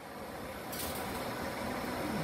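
GE Genteq ECM blower motor running its blower wheel with a steady airy whir that gets slightly louder; it runs again after its burnt-out thermistor was replaced.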